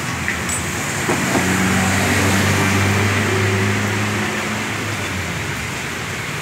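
A motor vehicle's engine hum swells about a second in and eases off toward the end, over steady traffic noise.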